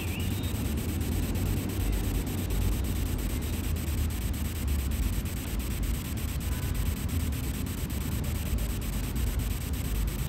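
Breeze blowing across the microphone: a steady low rumble with a thin hiss over it.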